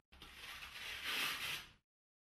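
Hook-and-loop (Velcro) fastening of a blood-pressure cuff being peeled apart as the cuff is unwrapped from the arm: one continuous tearing noise lasting about a second and a half, then cutting off suddenly.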